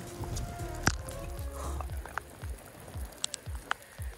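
Footsteps on wet ground, about three a second, with a few sharp ticks and one sharp click about a second in. Faint music plays under the first second or so.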